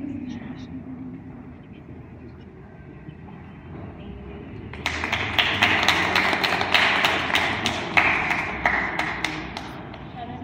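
A small crowd applauding, starting suddenly about halfway through and lasting about five seconds, over low room chatter.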